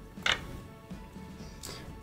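Faint background music, with one short click about a quarter second in as the plastic cap is pulled off a liquid glue bottle.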